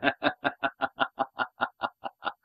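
A man laughing, a fast run of short 'ha' pulses that slowly die away.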